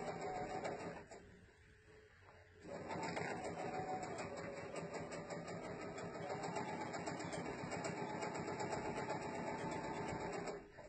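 Sewing machine stitching a seam at a steady speed; it stops for about a second and a half about a second in, then starts again and runs steadily.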